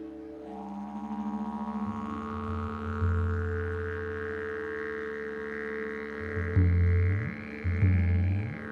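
Wooden didgeridoo droning in a live psychedelic electronic music piece, a high overtone slowly rising over the deep held note, with louder deep pulses near the end.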